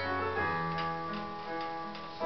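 Keyboard playing a slow piano-sound passage: sustained chords with new notes struck about every half second and left to ring.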